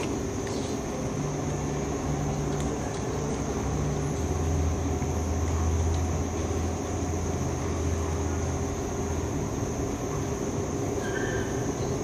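Steady low hum and rumble of a hall's room noise, likely carried through the PA, with a deeper rumble swelling for several seconds in the middle.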